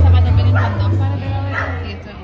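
A dog barking twice, two short yips about a second apart, over background music whose bass fades away during the first second.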